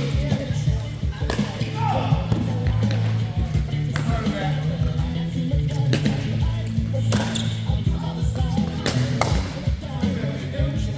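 Pickleball paddles striking a plastic ball in a rally, sharp pops about every one and a half to two seconds, over steady background music and voices.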